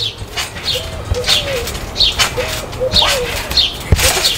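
Trampoline in use: short, squeaky creaks from the steel springs repeating about twice a second as the jumper bounces, with a low thump near the end as he lands.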